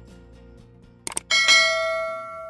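Soft outro music winding down, then a quick double click and a loud, bright bell chime that rings on and slowly fades: a notification-bell sound effect.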